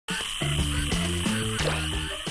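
Male spadefoot toads calling together in a chorus: mating calls that draw females to the breeding pond.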